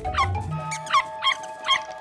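Cartoon dog barking in a quick run of short yips, about three a second, over steady background music.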